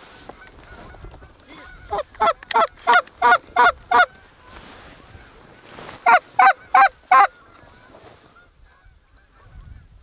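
Canada goose honks in two quick, evenly spaced runs: about eight loud honks around two to four seconds in, then five more around six to seven seconds.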